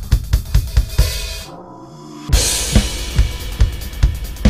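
Electronic drum kit played live over a backing track, with a driving kick-drum beat and hi-hat. About a second and a half in the groove drops out for under a second, then comes back in with a cymbal crash.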